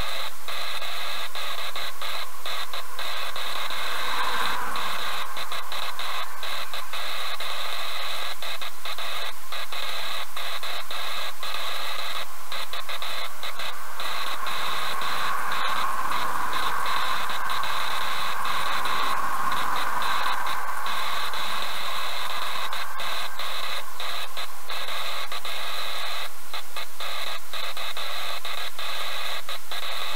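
Traffic passing a parked car, heard as a steady hiss through a dashcam microphone; the noise swells as a lorry passes close by about sixteen seconds in and fades again after about twenty seconds.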